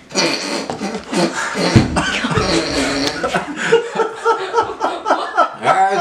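Men's muffled groans, vocal noises and laughter, made with a large lollipop held in the mouth, reacting to the burn of the super-hot pepper candy.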